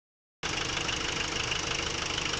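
Nissan CD17 1.7-litre four-cylinder diesel idling steadily, starting about half a second in. The engine is in good order, its injection pump working fine.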